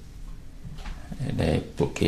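A man speaking Khmer: a short pause, then his speech resumes from about a second in.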